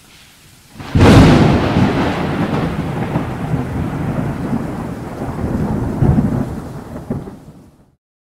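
Thunderstorm: faint rain hiss, then a loud thunderclap about a second in that rolls on as a long rumble, swelling again near six seconds and fading out just before the end.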